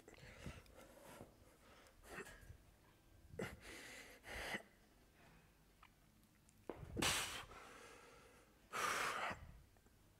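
A person breathing out hard in a few breathy puffs while stretching. The loudest come about seven seconds in and again near nine seconds.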